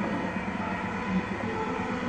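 Steady rumbling background noise with a low hum, without any distinct knock or clank.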